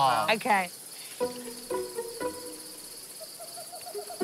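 Crickets trilling steadily, with a few short, soft musical notes about half a second apart and a quick run of small notes near the end.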